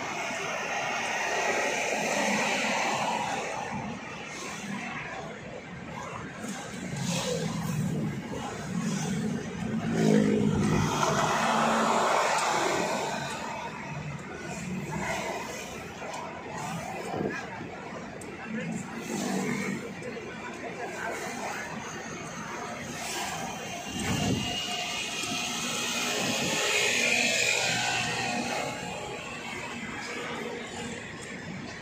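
Road and engine noise of a moving car heard from inside the cabin, with indistinct talking over it.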